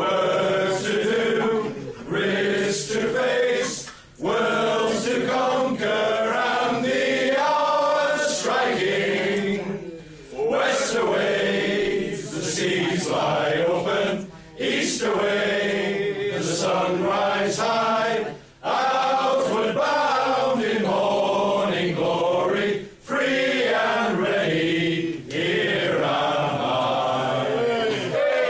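A group of men singing a song together, unaccompanied, in long phrases broken by brief pauses for breath.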